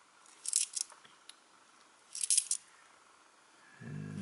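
Cupronickel 20p coins clinking against one another as they are shuffled in a hand, in two short spells of light metallic clicks about two seconds apart.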